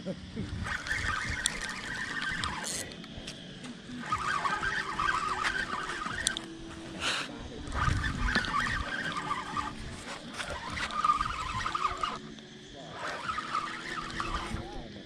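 A spinning fishing reel being cranked in repeated spells of a few seconds as a heavy hooked fish is reeled in, with a few low thumps of handling.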